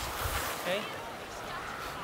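A man's voice briefly saying "Okay?" over a low, steady outdoor hiss, with a short burst of hiss at the very start.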